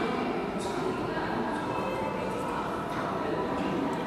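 Steady indoor background chatter: a murmur of many indistinct voices filling a large room, with a few faint small clicks.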